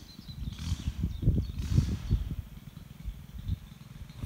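Irregular low rumble of wind buffeting the microphone in gusts.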